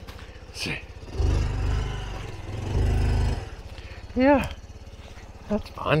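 Honda Trail 125's single-cylinder four-stroke engine running at low speed, with two louder surges of throttle, one about a second in and one about three seconds in.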